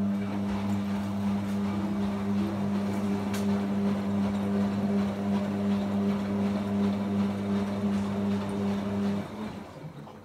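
Hotpoint WM23A washing machine running with a steady low hum and a rushing noise over it, which cuts off about nine seconds in.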